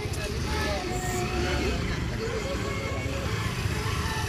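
Indistinct chatter from several people outdoors over a steady low rumble.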